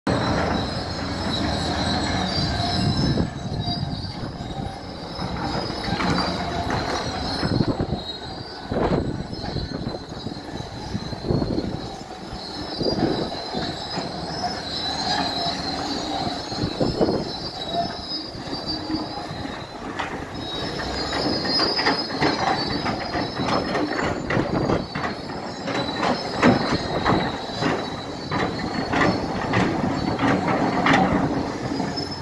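Hyundai crawler excavator at work: its engine runs under a high metallic squeal, with clanks and knocks of metal on rock. The knocks come thick and fast over the last several seconds.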